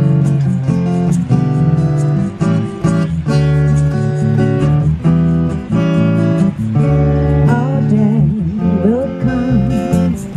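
A live band: an acoustic-electric guitar strummed in chords over an electric bass, through a PA. A voice comes in singing with a wavering pitch near the end.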